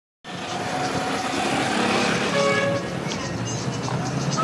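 Street traffic: a steady din of motorbike and car engines that cuts in suddenly at the very start.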